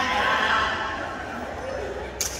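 A performer's voice through the hall's PA system, high and wavering, dying away during the first second and leaving a quieter hum of the room.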